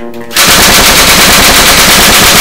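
Automatic submachine-gun fire, portraying an MP5: one continuous rapid burst of shots that starts about a third of a second in.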